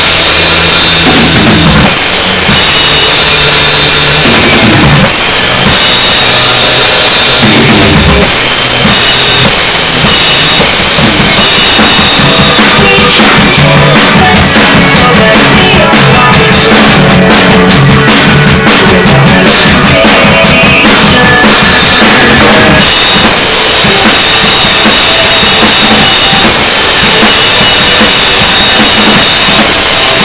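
Acoustic drum kit played hard in a rock groove: bass drum, snare and Zildjian ZBT cymbals, along with the band's recording of the song.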